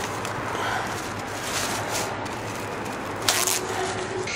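Thin plastic produce bag being pulled from a roll and crinkled, with a sharper rustle about three seconds in, over a steady hiss of shop background noise.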